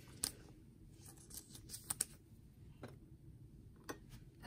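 Baseball trading cards being handled: a few light clicks and soft scrapes of cards tapped, slid and set down, the sharpest two clicks close together about halfway through.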